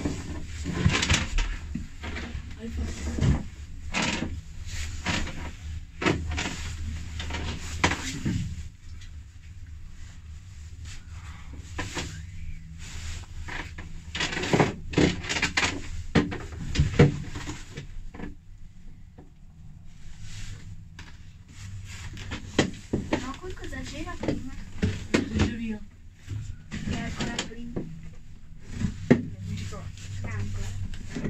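Cabin noise inside a moving gondola lift: a low hum for the first several seconds and irregular knocks and rattles, with muffled voices in the last third.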